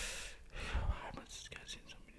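Faint, wordless muttering and breath from a man close to the microphone, with a few faint clicks near the end.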